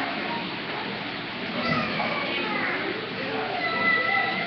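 A crowd of young children chattering and calling out in high voices, a steady hubbub of play.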